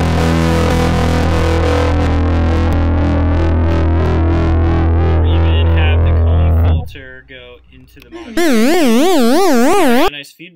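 Electric guitar through a Max/MSP software effects chain of modulation into distortion, a heavily fuzzed chord ringing out with a steady low bass and cutting off just before 7 s. About a second and a half later a loud warbling tone starts, its pitch sweeping up and down about three times a second: the patch caught in a feedback loop that sounds like something broke.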